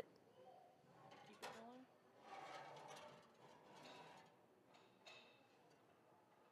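Near silence, with faint voices talking in the background now and then.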